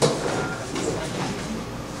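Performers moving on a stage floor: a knock right at the start, then footsteps and shuffling among chairs.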